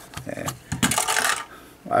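Clear plastic LEGO gyrosphere set rolling across a tabletop: a string of hard plastic clicks and knocks with a rattling roll in the middle.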